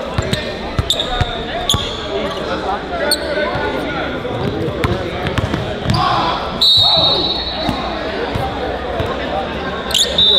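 Basketball bouncing on a hardwood gym floor and sneakers squeaking, over steady crowd chatter in a large gym. A sharp sneaker squeak stands out about two-thirds of the way through.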